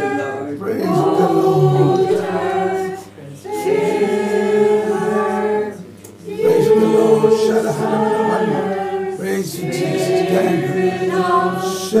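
Several voices singing together unaccompanied, in sustained phrases broken by short pauses about three and six seconds in.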